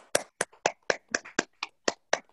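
Hand clapping, sharp single claps in a steady rhythm of about four a second, with the gaps between claps cut to near silence by the video call's audio.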